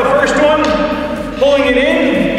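A man speaking in a steady narrating voice.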